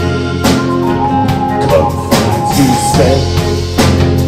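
Live band playing an instrumental passage between sung lines: violin, acoustic-electric guitar, bass guitar and drum kit, with a steady drum beat.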